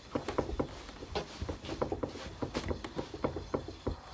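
A fitted bed sheet rustling and crackling with many short, irregular sounds as hands gather, pull and knot it around a stuffed dog bed.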